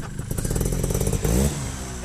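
Trials motorcycle engine revving. The revs climb to a peak about a second and a half in, then drop back.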